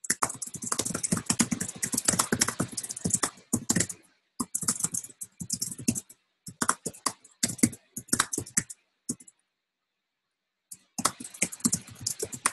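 Rapid typing on a computer keyboard, fast runs of key clicks broken by short pauses, with a longer pause of about a second and a half about three quarters of the way through before the typing resumes.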